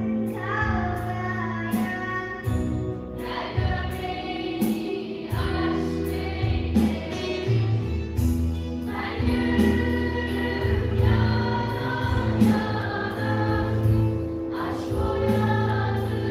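School choir of girls singing with a live band: drum hits about twice a second keep the beat and a steady bass line runs underneath the voices.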